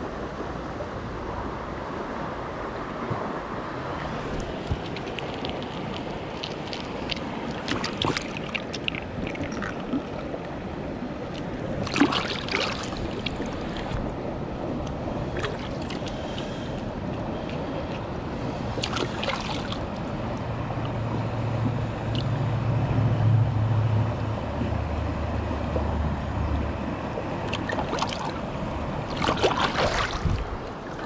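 Shallow creek water running and gurgling close to the microphone. Brief sharp knocks or splashes break in several times, and a low rumble rises for several seconds in the second half.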